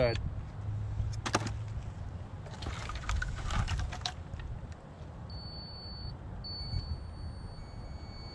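Split cherry firewood being handled: a sharp knock about a second in, then a short run of wooden clatters and rustles as pieces are picked up and shifted on the pile, over a steady low rumble.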